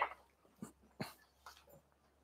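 A few faint, soft knocks and shuffles of chairs and feet as seated people stand up, after the last syllable of a man's voice at the very start.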